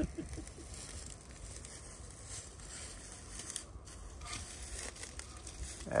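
Quiet outdoor background: a steady low rumble with a few faint scattered clicks and crackles.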